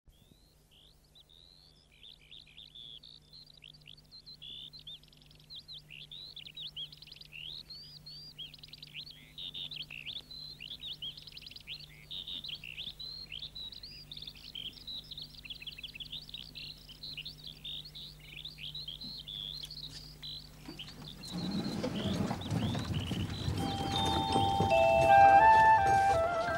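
Songbirds chirping and twittering in a dense chorus of quick rising and falling calls that fades in, over a faint steady hum. About 21 seconds in, a louder rustling noise comes in, and near the end music with clear high notes starts.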